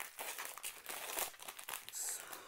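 Foil wrapper of a 2020 Panini Mosaic football card pack crinkling as it is opened and handled and the cards are slid out: a continuous run of small crackles.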